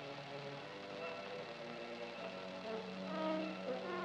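Soft background film-score music of sustained held notes, swelling slightly about three seconds in.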